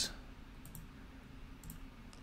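Faint clicks of a computer being used to select a crossword grid cell. A small cluster comes about two-thirds of a second in and another near the end, over a low steady room hum.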